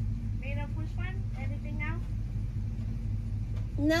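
Car engine idling, a steady low rumble heard from inside the cabin while the car stands stopped, with a faint voice speaking briefly in the first half.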